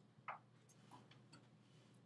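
Faint ticks and strokes of a felt-tip pen writing on a paper worksheet, irregular, the loudest about a third of a second in, over a low steady hum.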